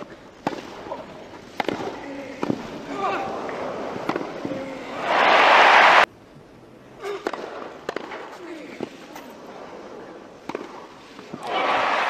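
Tennis match broadcast sound: scattered sharp racket-on-ball strikes during rallies, with a few voices in between. About five seconds in, crowd applause swells loudly and then cuts off suddenly, and more strikes follow.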